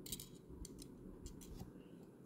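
Faint small clicks and ticks from fingers handling a 1:64 scale diecast model car, about six light ticks spread through the two seconds.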